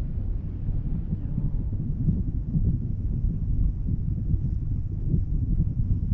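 Wind buffeting the microphone of a camera on a parasail's tow bar, an uneven low rumble that gusts up and down.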